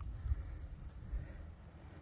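Faint low rumble and light rustling from a handheld camera being moved, with a few soft ticks, fading toward the end.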